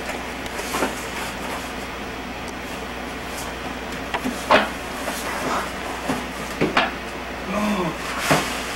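A cardboard box holding a wooden chess set being handled and opened: a few scattered light knocks and clicks of cardboard and wood, the sharpest about four and a half seconds in and again between six and seven seconds, over a steady hiss.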